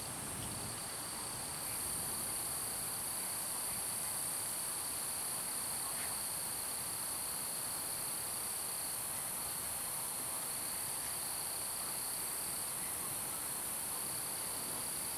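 A steady, high-pitched chorus of night insects such as crickets, which grows louder a little under two seconds in.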